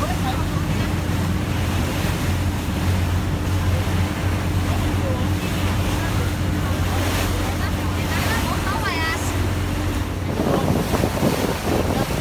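A boat's engine running at a steady low hum, with wind buffeting the microphone and the wash of water along the hull. About ten seconds in, the engine hum drops away, leaving gusty wind noise.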